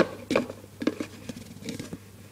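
Clear plastic food container being handled right at the microphone: a sharp knock, then a quick run of tapping and scraping clicks on the plastic.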